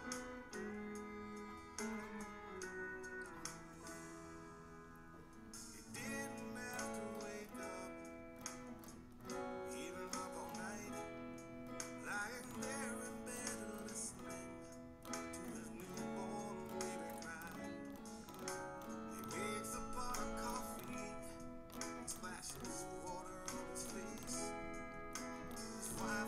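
Hollow-body electric guitar, capoed at the second fret, playing a chord progression of G, D, Asus2, B minor and F-sharp minor, with the notes picked and strummed in a steady run of chord changes.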